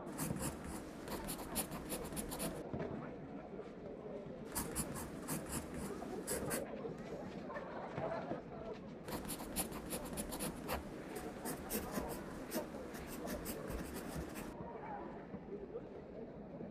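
Pencil writing on paper: three bouts of quick scratching strokes, the last and longest running about five seconds, over a faint murmur of distant voices.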